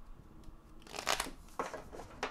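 A deck of tarot cards being shuffled by hand: a few short papery rustles and flicks, the loudest about a second in.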